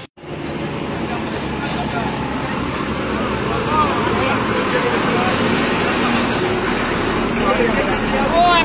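Crowd of bystanders talking over one another, many voices at once, over steady road traffic noise. The sound cuts out for a moment at the very start.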